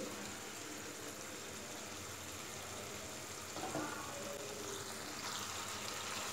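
Chicken curry simmering in an open pan on a gas stove: a soft, steady bubbling hiss.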